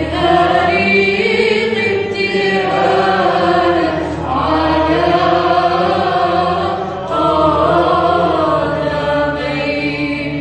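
A group of voices singing a slow liturgical hymn in unison, with long held notes and a steady low drone beneath. A new phrase begins about seven seconds in.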